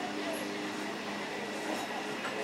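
Suburban electric multiple-unit (EMU) train rolling slowly alongside the platform: a steady running noise with a constant low hum.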